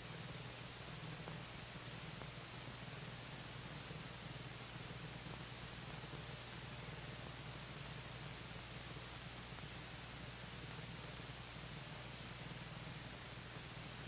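Faint steady hiss with a low, even hum underneath, and nothing else: the background noise of an old film soundtrack.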